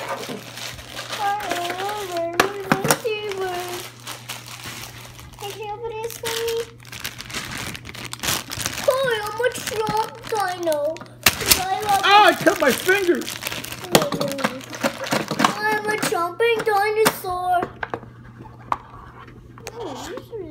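A young child's voice talking, over the crinkle of plastic bags being handled as toy pieces are taken out. A few sharp knocks of plastic come in midway.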